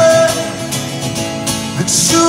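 Live rock ballad with an acoustic guitar strummed over the band, in a short break between sung lines.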